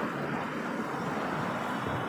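Steady traffic noise of passing cars.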